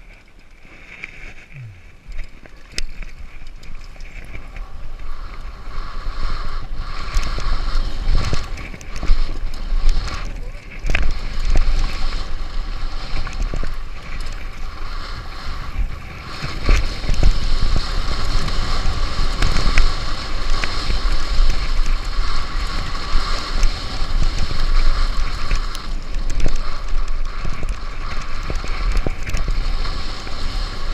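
Mountain bike descending a dirt jump trail at speed: wind rushing over the camera microphone with tyres on loose dirt, building in level after the first couple of seconds, broken by sharp knocks and clatters of the bike over bumps and landings.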